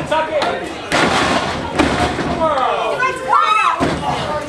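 Live wrestling match sound: shouting voices from the crowd, two heavy thuds about one and two seconds in as bodies hit the ring mat, and a drawn-out shout near the end.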